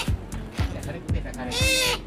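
A crow held in the hand calling once near the end: a single loud, harsh call lasting under half a second.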